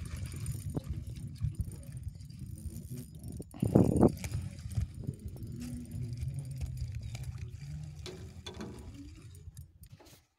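Wind rumbling on the microphone over open water, with one short, louder noise about four seconds in.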